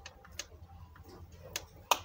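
A few light clicks and taps of hands and a scoring tool on a plastic scoring board and PVC sheet, with a sharper click just before the end.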